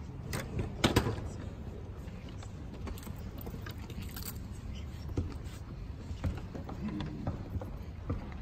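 Quiet hall with scattered small knocks and shuffles and faint murmurs as a big band and its audience settle before a number; the loudest is a sharp knock about a second in.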